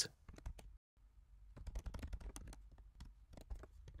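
Faint computer keyboard typing: quick, irregular keystrokes with a brief pause about a second in.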